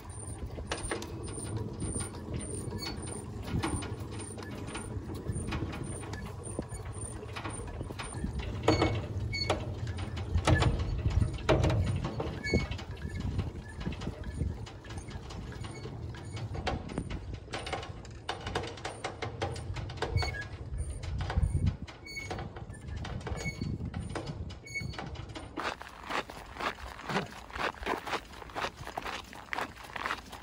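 Hand-cranked cable winch of a small pontoon ferry being worked to pull the ferry across the river, with a regular clicking from the winch and occasional louder clunks.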